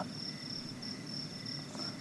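Crickets chirping faintly: a thin, high, steady trill that breaks off briefly a few times.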